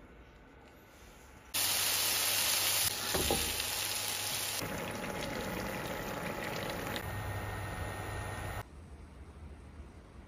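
A pot of stew boiling hard on the stove: a loud, even hiss of cooking that starts about a second and a half in and changes at a few edits. A little after eight seconds it drops away to a much quieter background.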